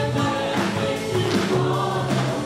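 Live church worship band playing a song, several voices singing together over acoustic and electric guitars and drums.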